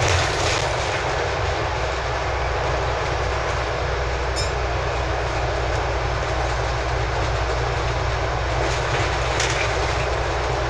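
Scania Enviro 400 double-decker bus under way at road speed, heard from inside: a steady low engine drone with road and tyre noise. There is a brief high squeak about four seconds in, and short rattles from the body near the end.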